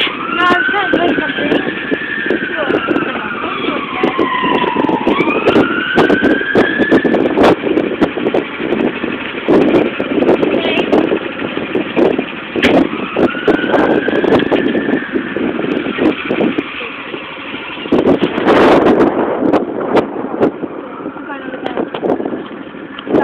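Go-kart engines running, their pitch sliding down and then climbing quickly again as the karts slow and speed up, over a steady rough din. A louder burst of noise comes about three-quarters of the way through.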